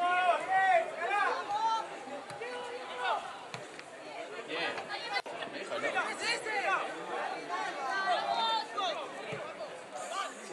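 Several spectators' voices talking and calling out at once, an indistinct chatter that is loudest in the first two seconds.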